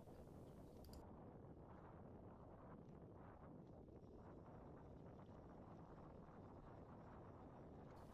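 Near silence: faint, steady low rumble of riding noise from a bike rolling down a dirt trail, with a faint hiss that cuts off about a second in.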